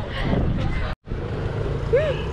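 Wind on the microphone with voices in the background, then, after an abrupt cut about a second in, a steady low motor-vehicle engine hum.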